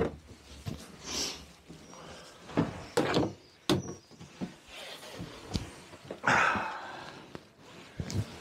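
Scattered knocks, clicks and thumps of a man moving about inside a small wooden shed. About six seconds in there is a longer scraping rustle as he sits down in a plastic garden chair.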